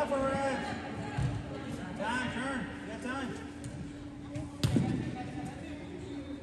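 Spectators' voices echo in an indoor soccer arena over a steady low hum. About four and a half seconds in comes one loud thud of the soccer ball being struck.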